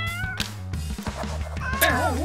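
Domestic cat meowing: one meow ending about half a second in and another near the end, over steady background music.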